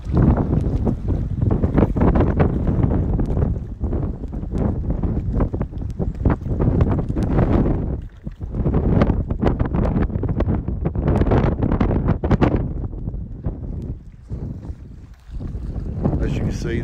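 Wind buffeting the phone's microphone in loud, irregular gusts, with short lulls about eight seconds in and again near the end.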